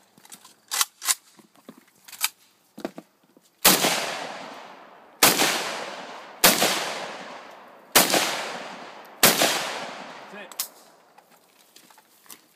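Wood-stocked AK-pattern rifle fired five times in slow, even succession, about one shot every second and a half. Each loud crack is followed by a long echo that fades. A few lighter clicks come first.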